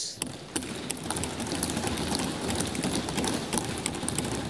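Members of parliament thumping their wooden desks in approval: a dense, irregular patter of many overlapping knocks.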